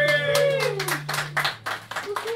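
A small audience clapping as a song ends, the claps quick and irregular, over a low held note that cuts off about a second and a half in and a voice gliding down in the first second.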